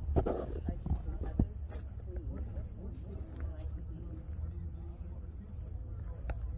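Voices of people talking some way off, over a steady low rumble, with a few faint clicks.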